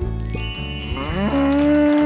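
A drawn-out animal call that slides up in pitch about a second in and then holds steady, over light background music.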